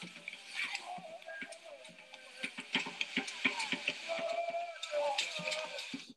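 Traditional ceremonial dance music: a held, wavering sung line over dense rattling and clicking percussion, played back through a video call. The sound cuts off suddenly at the end.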